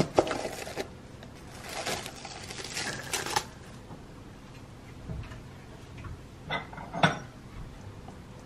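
A plastic food container's snap-on lid clicking open, followed by plastic rustling as the container is uncovered. Near the end, a couple of short clinks of dishware being handled.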